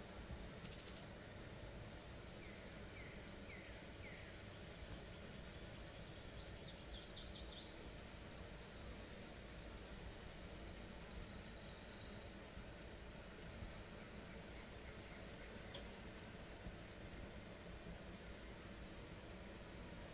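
Faint outdoor ambience with a steady low background noise and a few distant songbird calls: a short series of chirps about three seconds in, a quick run of high notes a few seconds later, and a steady high note lasting about a second near the middle.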